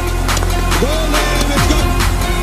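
Electronic background music with a steady, fast beat. In the middle, a gliding tone rises, holds briefly and falls away.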